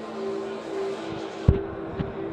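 Background music with steady held notes over the general noise of a busy fair hall, and one sudden thump about a second and a half in, after which the sound turns duller.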